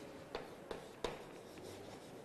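Faint chalk writing on a blackboard: three light taps about a third of a second apart in the first second, then soft scratching.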